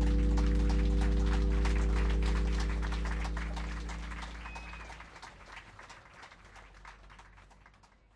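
The final held chord of a live acoustic band, led by bass and guitar, rings and dies away over the first five seconds. Under it runs a dense patter of audience clapping, which fades out with the recording near the end.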